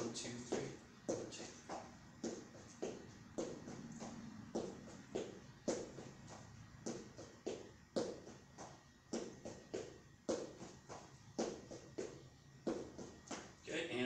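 Quick footwork in training shoes on a foam floor mat during an Ickey shuffle drill: sharp, even foot strikes about two a second.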